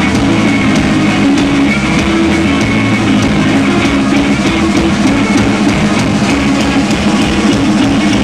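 Live rock band playing an instrumental passage: electric guitar, electric bass and drum kit, loud and steady with regular drum hits and no vocals.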